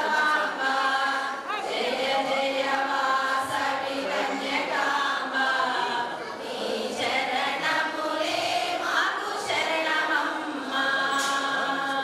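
Large group of women singing together as a choir, long held notes in phrases of a second or two with short breaks between them.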